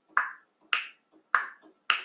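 Countdown ticking: sharp, evenly spaced ticks, a little under two a second, each with a brief ringing tail, marking the seconds of a guessing-game timer.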